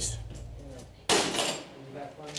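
Steel jail cell door's lock releasing with one sudden metallic clank about a second in, the door being unlocked from control on request.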